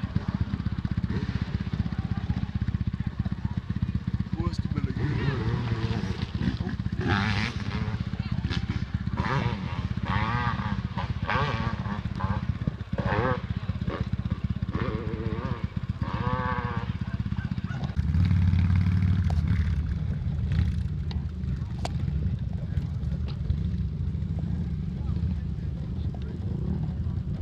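Steady low rumble of dirt bike engines running, with people talking over it. The rumble gets louder about two-thirds of the way through.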